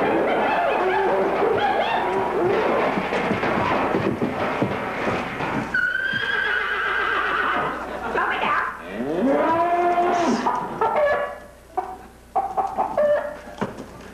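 Audience laughter, then animal cries from the creature in a large wicker basket: a high, drawn-out call about six seconds in, then a low, cow-like moo that rises and holds a few seconds later.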